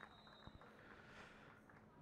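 Near silence: a gap in the commentary, with only faint background hiss.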